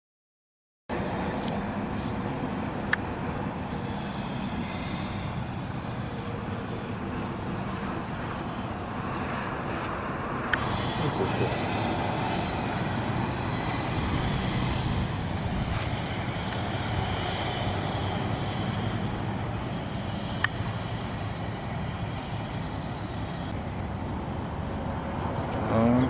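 Steady highway traffic noise from vehicles on an interstate, starting abruptly about a second in, with a semi-trailer truck going by in the second half.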